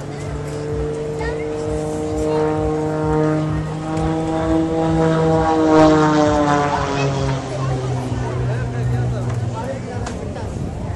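Single-engine aerobatic propeller plane flying overhead: a steady, pitched engine-and-propeller note that grows louder to a peak about six seconds in, after which its pitch slides down as the plane passes.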